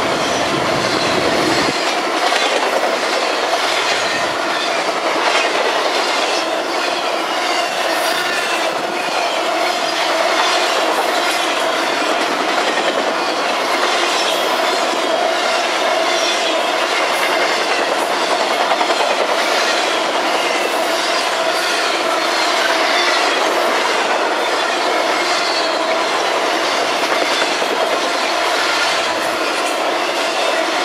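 Steel wheels of a passing trailer-on-flatcar intermodal freight train rolling on the rails, giving a steady, continuous rolling noise as the trailer-loaded flatcars go by.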